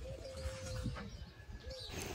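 A dove cooing faintly: one drawn-out coo of about a second that slides down at its end, then a short coo near the end.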